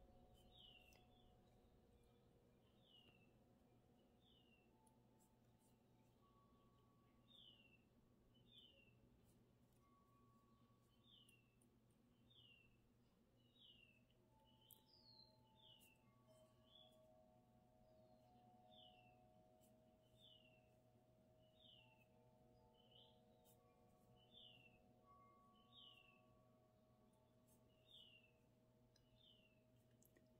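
Near silence: faint room tone with a small bird chirping in the distance, a short high note falling in pitch about once every second or two, often in pairs.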